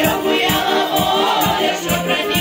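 A folk choir of children's and young women's voices singing, with a steady percussion beat about two to three times a second.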